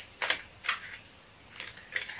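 A few short, sharp crinkles and clicks of a mascara box's plastic wrap and cardboard being handled and pulled open, with quiet gaps between.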